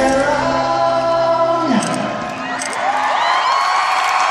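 Live rock band in an arena holding a final chord with a sung note that bends down and dies away about two seconds in, then the crowd cheering and whooping with rising shouts.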